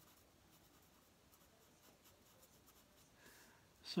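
Faint strokes of a black marker rubbing on drawing paper as dark tone is filled in.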